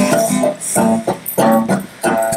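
A singer performing a song to their own strummed acoustic guitar.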